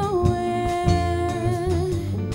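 Small jazz combo playing a jazz standard: one long, steady held melody note over walking bass and guitar chords.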